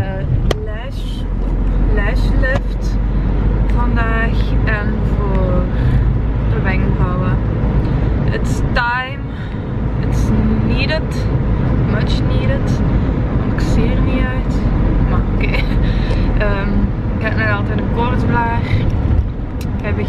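A woman's voice, talking or singing, over the steady low rumble of a car heard from inside the cabin.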